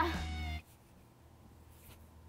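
A woman's drawn-out, pitched exclamation over a steady low music bed, both cutting off abruptly about half a second in and leaving faint room tone.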